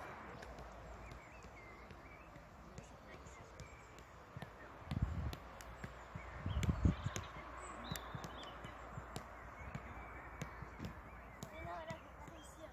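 Quiet outdoor background with two dull low thumps, about five and about seven seconds in.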